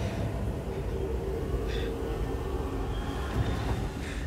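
Low, steady rumble from overlapping film soundtracks, with a faint held tone above it.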